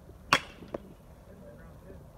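A baseball bat striking a pitched ball in batting practice: one sharp crack with a brief ring, followed about half a second later by a much fainter knock.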